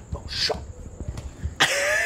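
A man's harsh, raspy throat sound, cough-like, breaking out suddenly near the end, after a short breathy hiss about half a second in.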